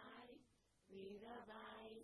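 Faint devotional chanting of a mantra: sung phrases on a steady pitch, with a short break about half a second in before the next phrase begins.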